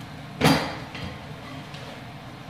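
A single sharp metal clunk about half a second in, with a short ringing tail: a steel die unit of the print finisher being set down or knocked while dies are swapped.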